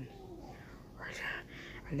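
A person whispering softly, a faint breathy hiss rising about a second in.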